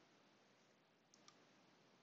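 Near silence with two faint computer-mouse clicks in quick succession a little after a second in, as the search-field dropdown is clicked.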